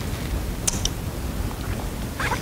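Steady low background rumble of a large hall, with two small sharp clicks about two-thirds of a second in.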